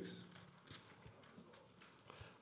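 Near silence: faint room tone with a few soft, scattered ticks, from the pages of a Bible being handled.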